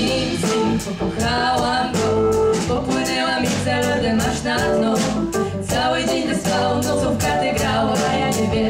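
Live band music: a woman singing with a backing choir of women, over a drum kit keeping a steady beat.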